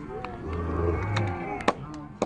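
Outdoor youth football match ambience: faint distant voices of players and onlookers, a low hum for about a second in the middle, and a couple of sharp knocks near the end like a football being kicked.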